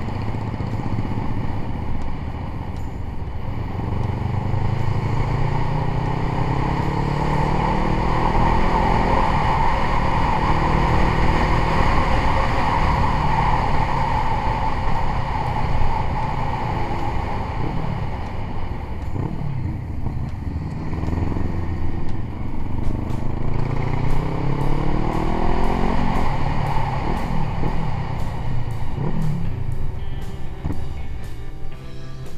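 Motorcycle engine running under way, its pitch climbing in repeated runs as it pulls up through the gears, once near the start and again in the second half, over steady road and wind noise.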